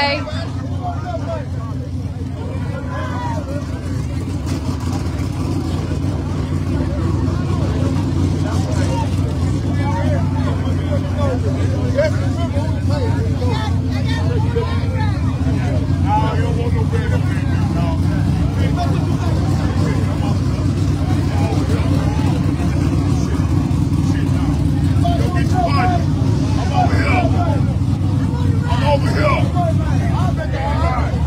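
Street-race cars' engines running with a steady low rumble, under the chatter of a crowd of spectators.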